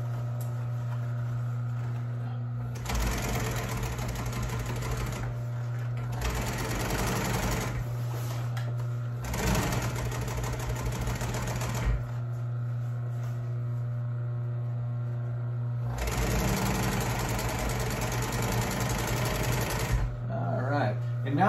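Juki industrial sewing machine stitching through heavy upholstery material in several runs of a few seconds each, starting about three seconds in, with a longer pause in the middle before a final run. Under it, its clutch motor hums steadily throughout.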